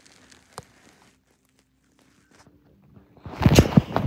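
Quiet at first, with a single click about half a second in; then, a little after three seconds, loud irregular thumps and rubbing as a handheld phone's microphone is bumped and brushed while the phone is moved about.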